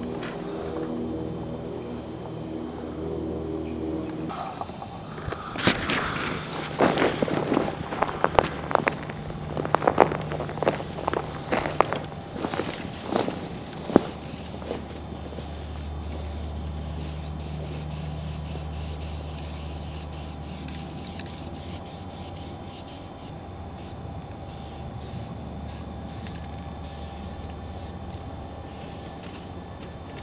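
Footsteps crunching and scraping on gravel railway ballast, irregular and loudest in the middle stretch of about ten seconds, over a steady low hum.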